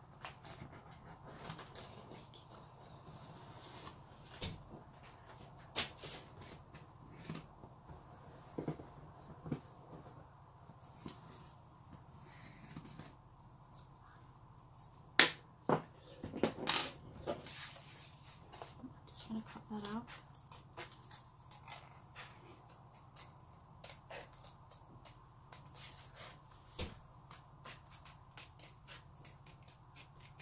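Tabletop crafting sounds: a pen tracing around a tape roll on cardboard and small objects being set down, with a sharp knock about halfway through, the loudest sound. Through the second half, scissors snip steadily through thin box cardboard in a run of small clicks.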